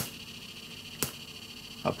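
Pioneer CT-F950 cassette deck running in play mode with no tape, giving two sharp static ticks about a second apart over a faint steady hiss. The ticks are the deck's static fault, which the owner traces to a poorly earthed part of the tape transport.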